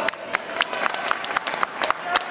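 Scattered handclapping from a small audience: a run of irregular claps, several a second.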